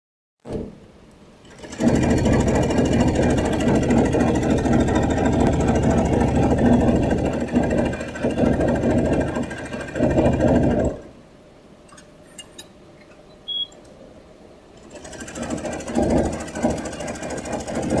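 Tajima multi-head embroidery machine stitching, a fast, even needle chatter. It stops about eleven seconds in, leaving a few clicks and a brief high tone, then starts stitching again for the last few seconds.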